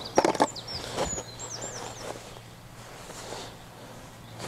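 A quick cluster of sharp clicks and knocks in the first half-second, another around a second in, then quieter fumbling: fishing tackle and bait being handled close by. Birds chirp in the background during the first couple of seconds.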